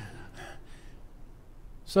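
A pause in speech: a faint, breathy sound in the first second, then quiet room tone, with a man's voice starting again at the very end.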